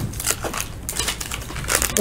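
Wax-paper wrapper of a 1976 Topps basketball pack crinkling and crackling in irregular quick bursts as it is handled and torn open.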